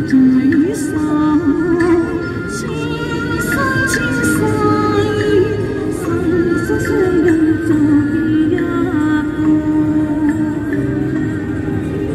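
Live amplified music: a woman singing into a microphone with a violin playing the melody alongside, over a steady accompaniment.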